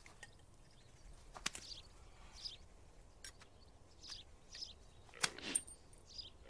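Faint rural outdoor ambience with a few short bird chirps and scattered sharp clicks, then a brief louder sound falling in pitch near the end.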